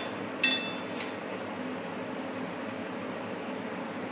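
Jalebis sizzling steadily in a pan of hot frying oil. About half a second in, metal tongs clink against the cookware with a short ringing tone, and there is a lighter tap about a second in.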